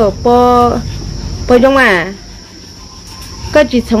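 A steady, high-pitched insect chorus, like crickets, runs under a man's voice speaking in three short phrases.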